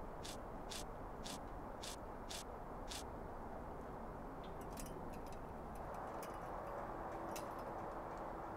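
Six crunching footsteps in snow at a steady walking pace, about two a second, over the first three seconds. They are followed by a few seconds of irregular light crackles and clicks.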